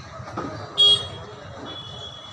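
A single short, loud, high-pitched vehicle horn toot about a second in. A fainter steady high tone follows, over low street background noise.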